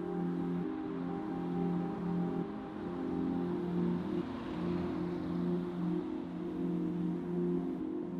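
Background music: soft ambient music of low sustained notes that change about once a second.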